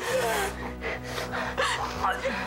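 Pained gasping breaths and a falling groan, with several short breathy gasps after it, over sustained background music.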